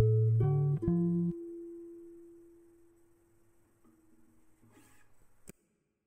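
Background music: quick plucked-string notes, then one held note that slowly fades out, cut off by a click near the end.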